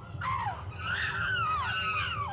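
Chimpanzees calling: several overlapping high calls that rise and fall in pitch, starting a moment in and going on throughout.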